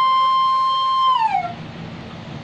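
Bamboo bansuri flute holding one long steady note that slides down in pitch and stops about a second and a half in, ending a melodic phrase.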